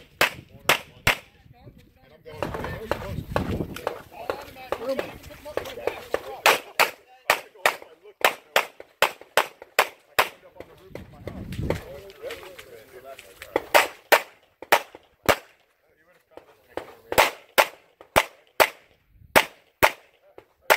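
Pistol shots fired in quick pairs and short strings as a shooter works through a practical shooting stage, with a brief pause about two-thirds of the way in before the shooting resumes. Voices are heard during the first half.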